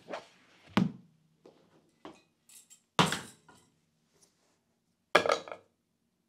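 Tools and objects being set down around a plastic toolbox: a sharp knock about a second in, a clattering knock at three seconds, and a rattling clatter of several knocks near the end, with near silence between.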